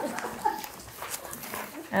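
Faint chuckles and murmurs from a small group of listeners, with sheets of paper rustling as pages are handled.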